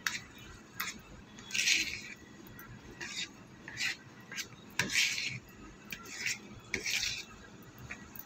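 Spoon stirring thick chocolate-biscuit cake batter in a bowl. Short, irregular scrapes and clicks, roughly one a second, as the spoon drags through the batter and knocks the bowl's sides.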